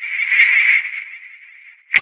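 Electronically warped logo sound effect: one held tone that swells in the first half-second, then fades away. It is ended by a sharp click.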